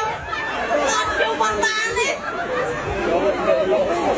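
Speech only: people talking in Khmer, with chatter from the crowd around them.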